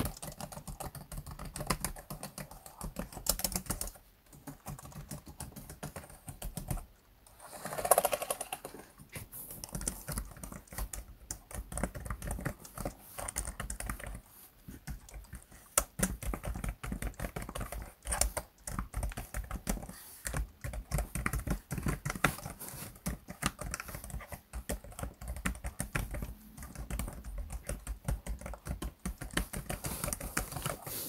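Fast typing on an ASUS laptop keyboard: a dense patter of plastic key clicks, with a couple of brief pauses and one louder, longer sound about eight seconds in.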